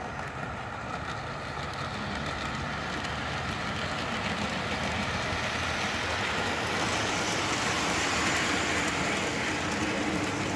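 O gauge model passenger train running along the layout track: a steady rolling rumble of wheels and motor that grows louder as the train comes closer, with a few light clicks near the end.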